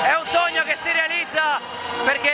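A man speaking close to the microphone.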